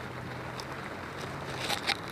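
Steady outdoor hiss of rain and wind, with a few footsteps crunching on wet gravel near the end.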